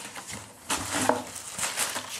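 Paper and cardboard rustling in a few short bursts as paper inserts and postcards are handled and lifted out of a cardboard box.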